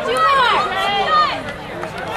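Several spectators' voices talking and calling out over one another, with rising and falling pitch, a little quieter in the second half.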